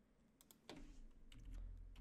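Faint typing on a computer keyboard: a couple of key clicks about half a second in, then a steady run of keystrokes.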